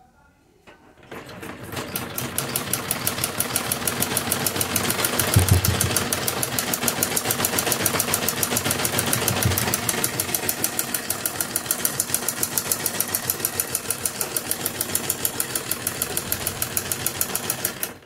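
Domestic sewing machine stitching a seam at a steady, rapid rate: a fast, even clatter of the needle mechanism that starts about a second in, picks up speed, and stops abruptly near the end. A brief low thump sounds about five seconds in.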